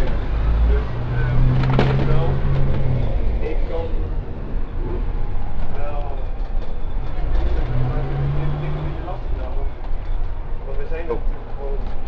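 A double-decker bus in motion, heard from inside: a continuous low engine and road rumble. A steadier engine drone comes up for about two seconds near the start and again around the eighth second. Passengers talk indistinctly over it.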